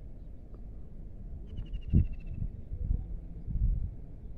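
Low rumbling noise on the microphone, with a few louder thumps in the second half. About a second and a half in comes a short, high, rapid trill, sliding slightly down in pitch, typical of a bird call.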